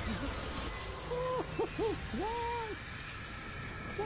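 A man's wordless excited vocal exclamations: three short cries that rise and fall, starting about a second in, then a longer held one.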